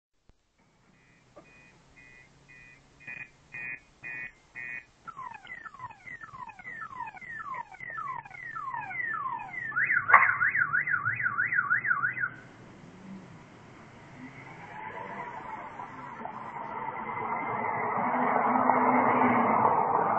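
A car alarm cycling through its siren patterns: a string of short beeps, then a run of falling sweeps, then a fast warble that cuts off about twelve seconds in. A broad rush of noise then builds, loudest near the end.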